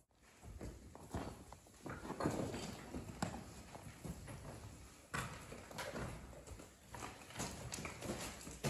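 Irregular footsteps crunching and knocking over loose limestone rubble.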